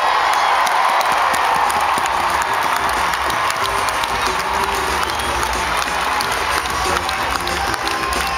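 Large stadium crowd cheering and applauding: many hand claps over continuous crowd noise, cheering a race finish.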